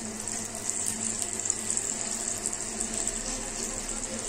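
Wheat-flour banana pancake batter sizzling in hot ghee in a pan, a steady crackling hiss.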